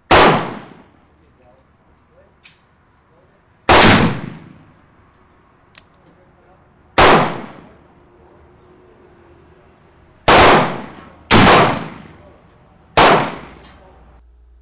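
Six shots from a black powder percussion cap-and-ball revolver, loaded with 30 grains of 3Fg powder and a .454 round ball. They come a few seconds apart, the last three closer together, and each is followed by a short echo.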